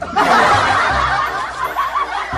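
Laughter from a group of people, like a canned laugh track, starting abruptly just after the start and running on loudly.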